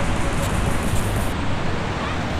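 Steady rushing noise of a river and wind on the microphone, with a faint high hiss that stops about two-thirds of the way through.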